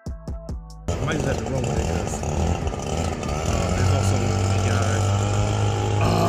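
Beat-driven music cuts off about a second in, and the steady low drone of a leaf blower's small engine takes over, getting louder from about four seconds in, with a man's voice over it.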